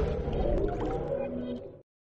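The channel's logo sting music dying away: sustained low tones that fade, then cut to silence near the end.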